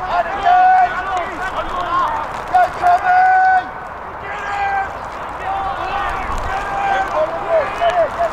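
Loud, high-pitched shouts from several voices on a rugby pitch: long held calls, then a quick string of short repeated calls near the end.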